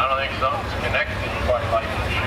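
Mack semi truck's diesel engine idling with a steady low rumble, under indistinct voices.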